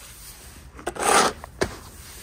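A yard broom sweeping loose feed across a concrete floor: one scraping stroke about a second in, with a couple of light knocks around it.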